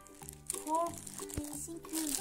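Clear plastic bag crinkling as hands pull and handle it, over background music with steady held notes.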